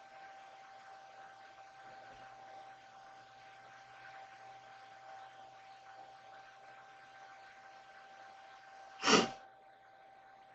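A faint steady hiss with a thin, steady whine under it, then one short, loud sneeze about nine seconds in.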